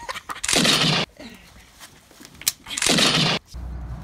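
Two revolver shots about two seconds apart, each a loud blast that stops sharply after about half a second.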